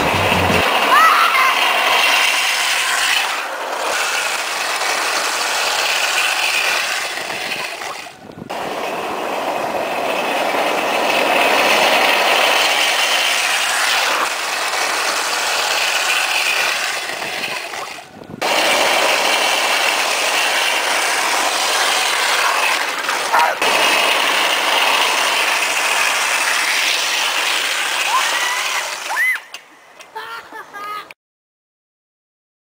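Steel ball-bearing wheels of wooden carrinhos de rolemã rolling fast down a paved road, a loud, steady grinding rattle, with children's voices and a laugh over it. The sound breaks off briefly twice, at about eight and eighteen seconds in.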